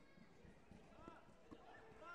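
Faint sports-hall sound: distant voices echoing, with soft irregular thumps of bare feet on foam mats.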